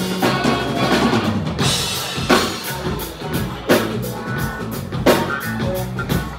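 Live band playing an instrumental passage with no vocals. The drum kit leads with kick and snare or rimshot hits, the strongest accents falling about every second and a half, over bass guitar and other instruments.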